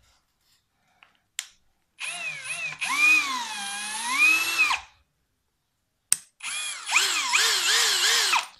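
Parkside Performance 20V brushless cordless drill driver (PABSP 20 Li A1) run twice off the trigger in a test after reassembly, its motor whine rising and falling as the trigger is squeezed and eased, slowly in the first run and in quick waves in the second. A sharp click comes just before the second run.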